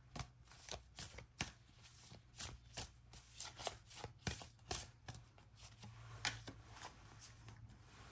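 An oracle card deck being shuffled by hand: a run of soft, irregular card clicks and slides, a few a second, easing off near the end.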